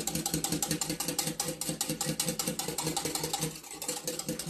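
Wire whisk beating a liquid mix of eggs, melted butter and milk in a glass measuring jug: the wires tick against the glass in a fast, even rhythm of several strokes a second.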